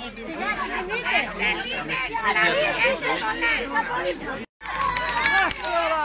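A crowd of people talking over one another at once, several voices overlapping. The sound cuts out for a split second past the middle.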